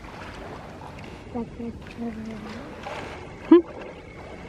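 Water sloshing and splashing in a zoo polar bear pool as cubs swim and play, under low background voices. A short, loud rising squeal comes about three and a half seconds in.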